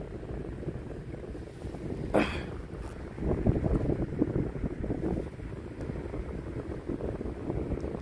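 Low, uneven rumbling background noise, swelling a little about three to five seconds in, with one brief sharper sound about two seconds in.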